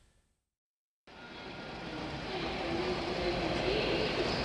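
The last of a heavy-metal track fades out into about a second of silence. Then a recorded train sound fades in and builds: a rumbling rush with a faint wavering tone over it.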